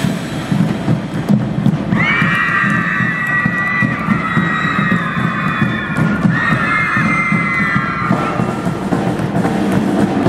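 Marching band's drums keep a steady beat while the band members give two long, high-pitched group shouts, the first about two seconds in and the second about six seconds in.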